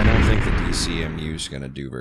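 A loud, rumbling, explosion-like boom sound effect dying away, the closing hit of the intro music. A man starts speaking near the end.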